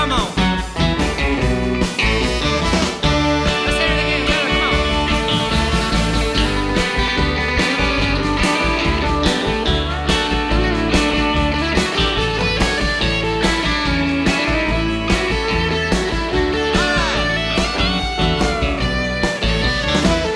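Live country-rock band playing an instrumental break: electric guitar with bending notes over keyboard and a steady beat.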